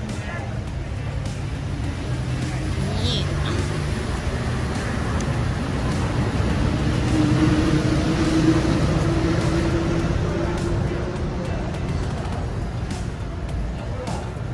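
City road traffic: a steady rumble of passing cars, with one vehicle growing louder and passing about halfway through.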